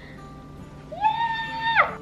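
A woman's high-pitched excited squeal: one long note that rises, is held for nearly a second, then drops away. Faint background music runs underneath.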